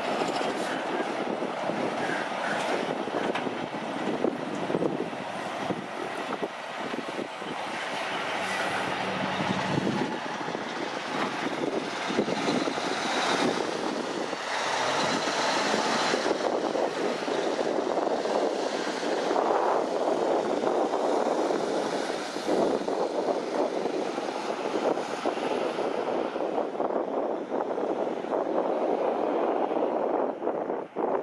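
Road trains driving past: heavy diesel trucks with tyre roar and the rattle of their trailers, growing louder about halfway through.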